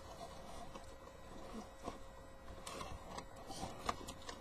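Faint rustling and scattered light clicks of hands working at toy packaging, with a sharper click about two seconds in and another near the end.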